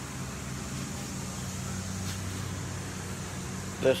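A steady low machine hum over an even background hiss, with a faint tick about halfway through; a spoken word begins at the very end.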